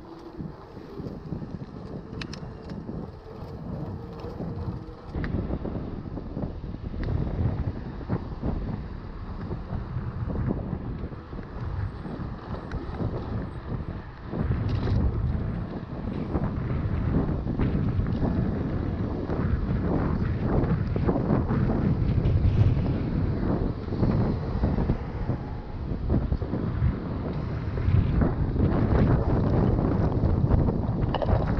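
Wind buffeting an action camera's microphone, with tyre and road noise from a mountain bike being ridden, growing steadily louder as the ride goes on.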